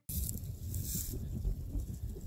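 Wind buffeting a phone's microphone in the open: an uneven low rumble, with a brief hiss in the first second.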